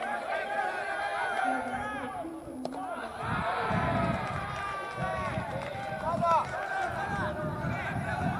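Many voices shouting and calling around a baseball ground, with one sharp pop about two and a half seconds in, which fits a pitch smacking into the catcher's mitt for strike three.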